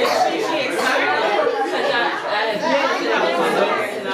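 Several people talking over one another in a room: indistinct, overlapping chatter with no clear words.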